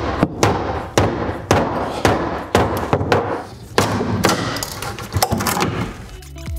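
Hammer blows knocking apart a wooden 2x4 shelving frame: a dozen or so sharp knocks on wood at an uneven pace, about two a second.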